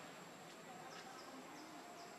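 Quiet outdoor ambience with faint insect buzzing and a steady high insect whine, plus a few faint short chirps about a second in.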